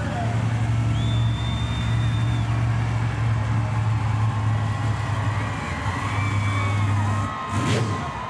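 Monster truck's engine running with a steady low rumble as the truck rolls slowly along the track; the rumble drops away about seven seconds in.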